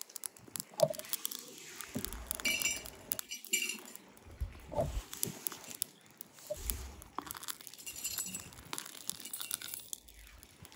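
Faint, irregular crackling and clicking from scrap copper wire heating in a crucible in a gas-fired melting furnace.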